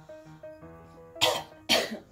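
Soft music with steady held notes, then two loud coughs about half a second apart near the end.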